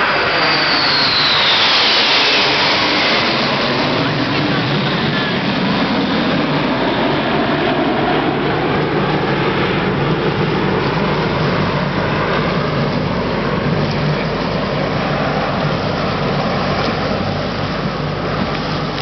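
Red Arrows BAE Hawk jets flying past, a loud rush with a falling whine over the first few seconds as they go by, then steady jet noise as they fly on.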